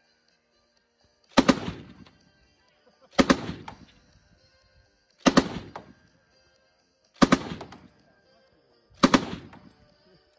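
M1918 Browning Automatic Rifle in .30-06 fired from the shoulder, open bolt, five single shots about two seconds apart, each trailing off in a short echo.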